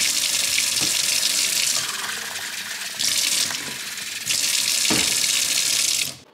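Kitchen mixer tap turned on suddenly, water running hard into a stainless steel sink, a little quieter for a stretch in the middle, then shut off at the end.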